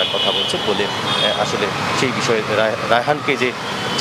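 A man talking over steady street traffic noise, with a thin high steady tone in the first second and a half.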